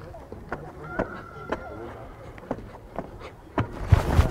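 A child's feet landing on artificial turf while jumping through a cone drill: a series of short, soft thuds about every half second, with a gap near the middle, over faint background chatter.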